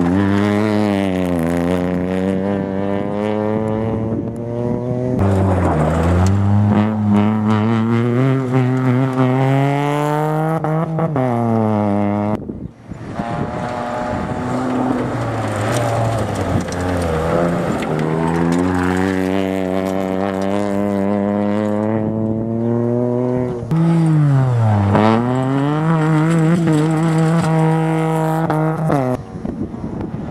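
Small-engined Peugeot 107 rally cars running flat out on a gravel stage, one after another. Each engine's pitch climbs as it revs up, then drops sharply at each shift or lift before climbing again.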